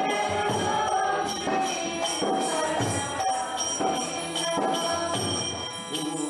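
Devotional kirtan for the morning arati: a group of voices singing a chant, with ringing metal hand cymbals keeping a steady beat.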